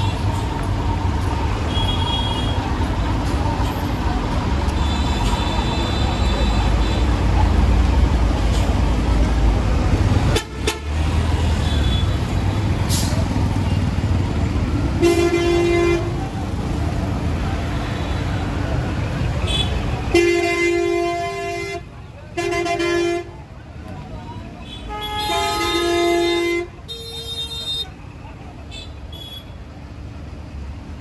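Heavy traffic in a congested street. A large vehicle's engine runs close by with a deep rumble for the first two-thirds. Vehicle horns sound once around the middle, then in a run of several blasts of changing pitch in the last ten seconds.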